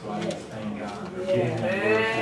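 Worship singing: a drawn-out voice with a wavering pitch, growing louder about halfway through as more sound builds in.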